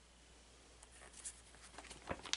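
A paper journal page being turned by hand: soft paper rustling that starts about a second in and runs as a few quick crackles.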